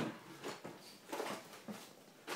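Handling noises: a sharp click right at the start, then light rustling and soft knocks as things are moved about on a tabletop while someone searches for a pen.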